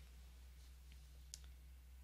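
Near silence: room tone with a low steady hum and one faint click a little past halfway.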